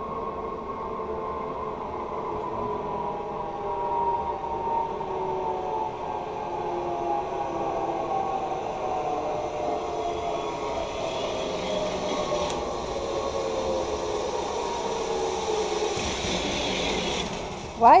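Zipline trolley pulleys running along the steel cable as a rider comes in: a humming whine with several tones that slowly falls in pitch as the trolley slows, joined by a rising hiss in the last few seconds that cuts off just before the rider lands on the platform.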